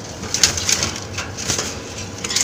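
Short crackling, rustling noises from a pigeon cage with nesting straw, four or five in quick succession.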